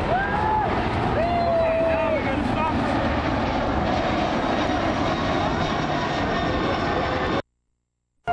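A jet airliner passing low overhead: a steady, loud roar. Women's high-pitched exclamations and laughter sound over it in the first two seconds. The sound cuts out abruptly near the end.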